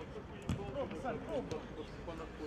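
A football being kicked on artificial turf, with one sharp thud about half a second in and a lighter touch near the end, amid shouting voices of players on the pitch.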